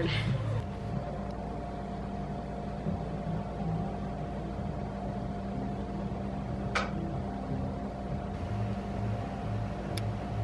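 A steady low hum with a faint higher tone above it, and soft low notes that shift underneath. A single brief click comes about seven seconds in.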